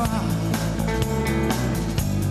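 Live rock band playing an instrumental passage: guitar, bass guitar and drum kit.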